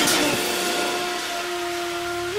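Breakdown in an electronic breaks/trap track: the drums and bass drop out and a held synth tone sits over a hissing noise wash that slowly fades.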